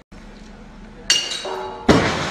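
Shock table impacts under a stone masonry model: a sharp metallic clank with ringing tones about a second in, then a much heavier slam near the end that dies away slowly as the table strikes its stop and jolts the model.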